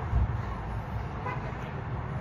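Steady low rumble of outdoor background noise, with a brief low thump just after the start and a short faint tone a little past a second in.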